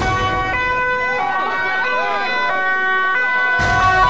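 Emergency vehicle's two-tone siren, stepping back and forth between a higher and a lower pitch about every two-thirds of a second, with voices shouting underneath.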